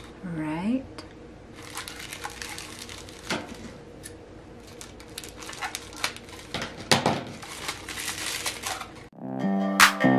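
Wire-edged ribbon crinkling and crackling as it is pulled off its spool and handled, with a few sharp clicks and snips as it is cut with scissors. Electronic music with a beat comes in about nine seconds in.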